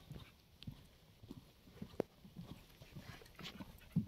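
Horse cantering on a sand arena: soft, muffled hoofbeats in an uneven run, growing a little louder near the end as the horse comes closer.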